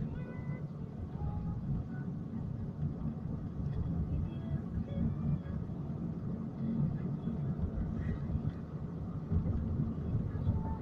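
Steady low rumble of a moving vehicle heard from inside it.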